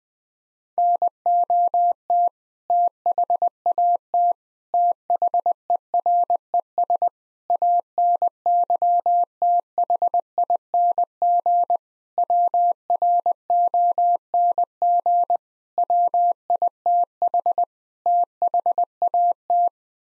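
Computer-generated Morse code at 20 words per minute: a single steady-pitched tone keyed on and off in dots and dashes, in seven word groups. It sends the seven-word phrase 'not that there's anything wrong with that', which is spoken aloud right after.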